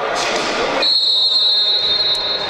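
Referee's whistle: one long steady blast starting about a second in, the signal for a set piece to be taken, over the noise of the sports hall.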